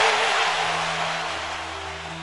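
The title-music soundtrack dying away: a broad rushing noise, like a whoosh or cymbal wash, fades steadily over about two seconds above a low held hum.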